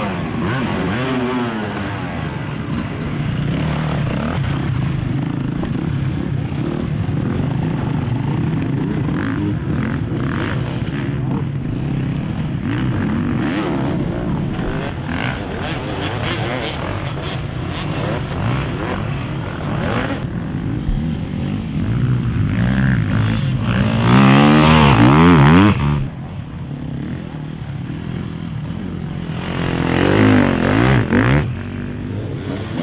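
Enduro dirt bike engines revving continuously, their pitch rising and falling as they climb through mud and over obstacles. One bike runs close and loud for a couple of seconds near the end, revving hard with its pitch swooping up and down.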